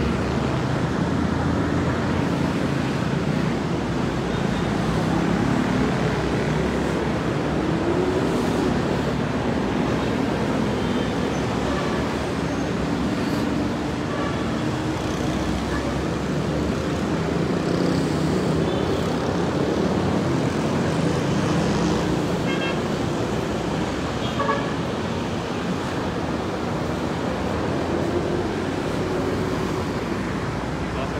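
Steady city street traffic noise heard from above, with a murmur of voices and occasional short horn toots.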